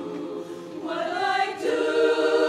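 A women's barbershop chorus singing a cappella in close harmony, holding chords; the sound eases off briefly, then swells into a louder new chord about a second in.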